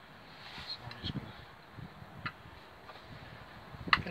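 A few faint clicks and rustles of small lock spacer pieces being handled, with one sharper click near the end.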